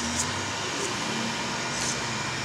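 Creality Ender 3 3D printer running mid-print: a steady whir of its cooling fans, with a faint whine that stops about half a second in and a few light ticks, as it lays down first-layer skirt lines.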